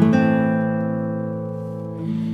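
Background music on guitar: a chord is struck at the start and left ringing, slowly fading away.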